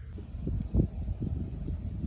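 Uneven low rumble of wind and handling on a handheld phone's microphone as fingers move rose leaves, with small soft bumps and a faint steady high-pitched hum.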